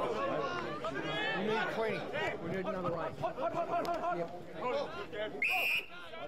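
Spectators chatting, several voices talking over each other. A short, shrill whistle blast from the umpire, about half a second long, comes near the end.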